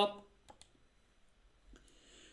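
Computer mouse clicking: two quick ticks about half a second in and a fainter one near the end, as an on-screen exam moves to the next question.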